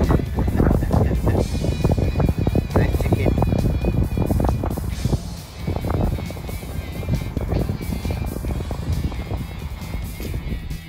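Wind buffeting the microphone in gusts, a heavy low rumble that rises and falls, under background music.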